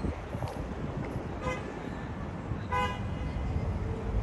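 Two short vehicle-horn toots just over a second apart, the second louder, over a steady rumble of street traffic.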